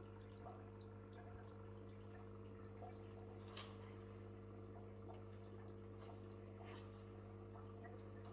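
Faint steady hum of a small aquarium pump, with a few soft water drips and ticks scattered through it.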